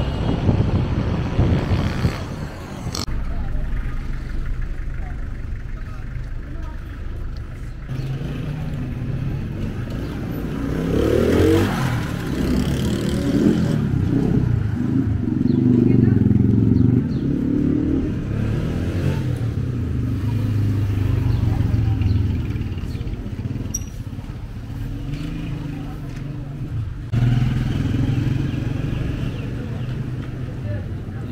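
Street traffic passing, with motorcycles among it, and people's voices nearby from about a third of the way in.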